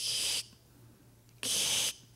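Two short, sharp breathy hisses made with the voice into a microphone, each about half a second long and about a second apart. They are a vocal sound effect for the critter noise heard in the dark.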